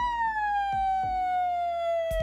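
A woman's voice holding one long, high 'oooo' that slides slowly downward in pitch, like a siren.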